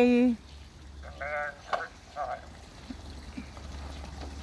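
A powered wheelchair driving slowly into a shallow, stony stream ford, with faint water sloshing around its wheels over a low steady rumble. A voice holds a drawn-out note at the very start, and short snatches of speech follow.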